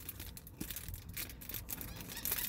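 Faint crinkling of the clear plastic wrap on a pack of scouring sponges as it is handled and turned over, a scatter of small crackles.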